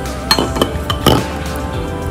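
Plastic slime activator bottles set down in a clear glass bowl, knocking against the glass about four times in quick succession, over background music.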